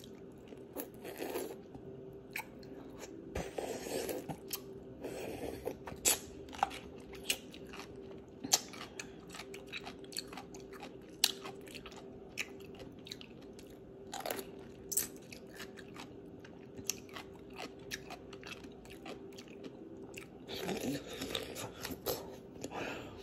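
Biting and chewing a crunchy baby dill pickle: sharp crunches and mouth clicks scattered throughout, a few much louder than the rest, over a faint steady hum.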